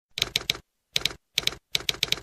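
Typing sound effect of typewriter keys being struck in quick clusters of two or three, about five clusters in all.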